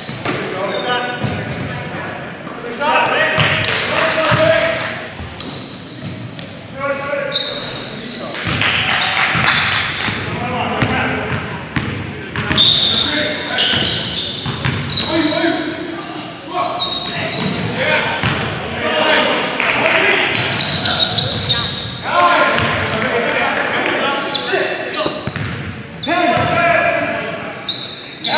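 Basketball game in a gymnasium: a basketball bouncing on the hardwood court, brief high sneaker squeaks and players calling out, all echoing around the large hall.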